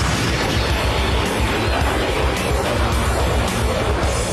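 Dense, steady rumbling noise with a heavy low end: a dramatised sound effect of a jet mid-air collision and fireball, mixed with background music.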